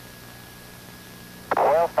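Steady hiss and hum of the mission radio audio with a faint steady whistle tone. About one and a half seconds in, a voice over the radio loop calls "stop", the wheel-stop call that the orbiter has come to a halt on the runway.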